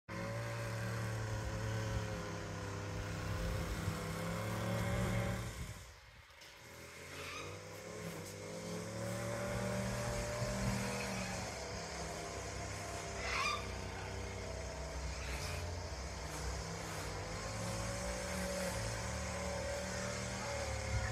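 A motor engine running steadily, its pitch drifting slowly up and down. It fades almost away about six seconds in, then returns.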